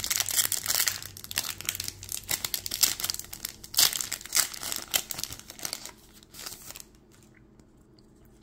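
Trading card pack wrapper from a 2022 Topps Gallery box being torn open and crinkled by hand: a dense run of crinkling and tearing crackles that stops near the end.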